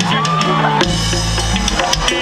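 Live band playing Latin dance music through a loud PA: drum kit, electric bass and electric guitar, with a deep bass note about a second in.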